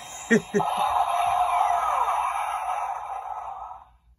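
The toy Batmobile's electronic sound effect playing through its small built-in speaker: a tinny, narrow-band sound with a falling sweep in the middle. It starts after two clicks near the beginning and cuts off just before the end.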